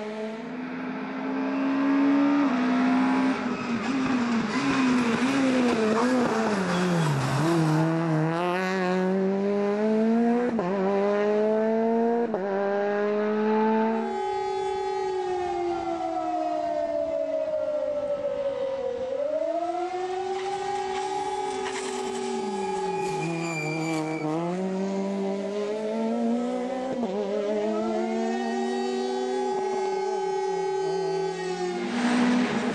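Rally car engine revving hard, its pitch climbing and dropping repeatedly with gear changes and lifts off the throttle. About halfway through the sound changes suddenly to another stretch of the engine note falling away and climbing again.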